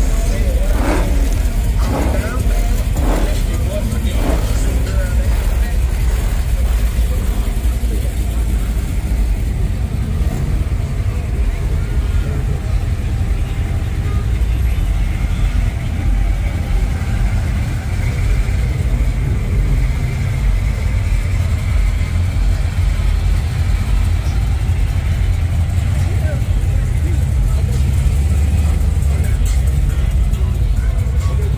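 Low, steady rumble of car engines as custom cars cruise slowly past at a car show, with people's voices underneath.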